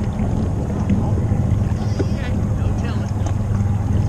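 A boat's outboard engine idling with a steady low hum, under faint voices from across the water.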